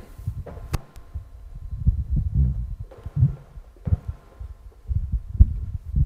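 Irregular low thumps and bumps, the handling noise of a handheld microphone being carried, with a sharp click under a second in.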